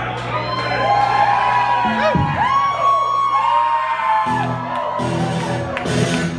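Live rock band on stage with the crowd whooping. A held chord sustains and stops about four seconds in, and then guitar strumming starts.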